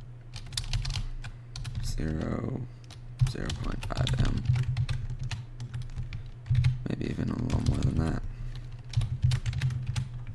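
Typing on a computer keyboard: rapid key clicks in irregular runs, with short pauses between them.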